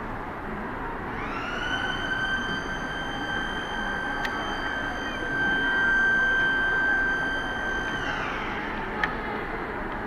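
A small electric motor whining: it spins up about a second in, holds a steady high pitch for some six seconds, then winds down with a falling pitch. A sharp click follows near the end, over a steady background hum.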